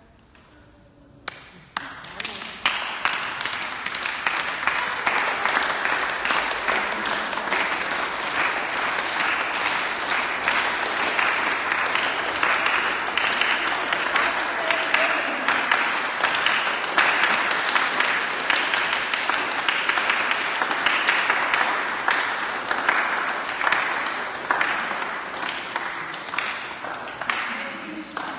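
A group of people clapping their hands continuously: a lone clap a little over a second in, then dense clapping for the rest of the time, fading slightly near the end.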